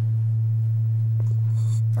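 A loud, steady low electrical hum: one unchanging tone carried on the audio feed. A faint, short hiss comes about one and a half seconds in.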